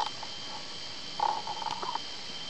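Steady outdoor background with a thin high drone, and a buzzy mid-pitched call that starts a little past halfway and runs on for under a second.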